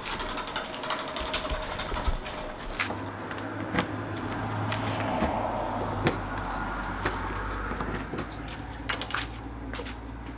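Footsteps and scattered clicks and knocks while a motorhome's rear storage-compartment door is unlatched and pulled open, over a steady low hum that starts a few seconds in.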